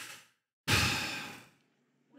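A man's loud, exasperated sigh close to the microphone. It starts about half a second in and fades away over nearly a second, after a short breath at the very start.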